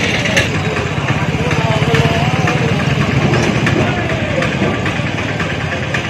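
Busy street sound: an engine idling close by with a steady, pulsing rumble, under background voices of people talking.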